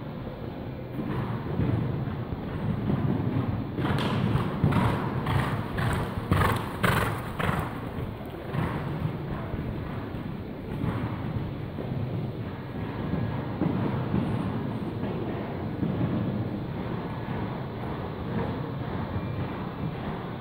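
Horse cantering on the sand footing of an indoor arena: a run of rhythmic stride sounds, about two and a half a second, loudest from about four to eight seconds in as the horse passes close. A steady low hall rumble lies underneath throughout.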